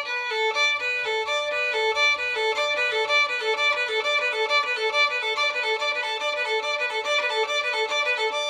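Solo violin playing a quick bowing exercise: a steady stream of short bowed notes in a repeating pattern, with one pitch sounding steadily beneath them.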